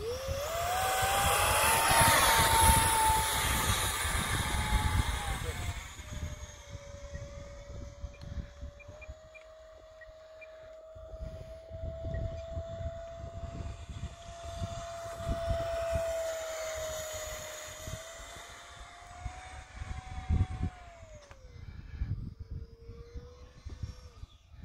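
The 50 mm electric ducted fan of a model jet, an FMS fan on a 4S battery, spools up to a high whine as it is hand-launched. It then whines steadily in flight, its pitch and loudness rising and falling with throttle and distance. It is loudest in the first few seconds, swells again in the middle, and drops in pitch near the end.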